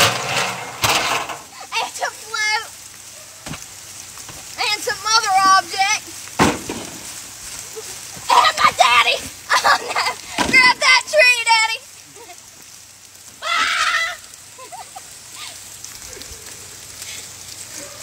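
A woman's high-pitched, wavering cries and laughter in several bursts, over a steady hiss of rain.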